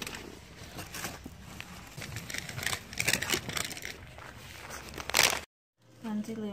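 Paper takeout bag being handled: irregular rustling and crinkling with small scattered knocks, a louder rustle about five seconds in, then the sound cuts off abruptly.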